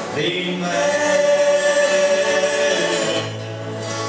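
Gospel trio singing in harmony over acoustic guitars, holding one long note before the next phrase starts near the end.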